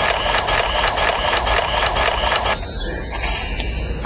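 Audio played back from the presentation laptop over the hall's speakers: a loud, evenly repeating rhythmic sound that switches abruptly to a higher, hissier sound about two and a half seconds in.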